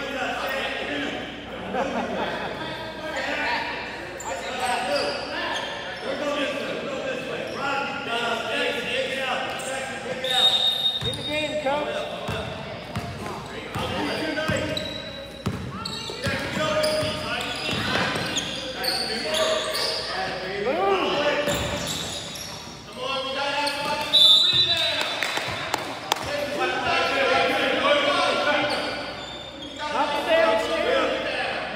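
A basketball being dribbled on a hardwood gym floor during a game, with players and spectators shouting indistinctly, all echoing in a large hall.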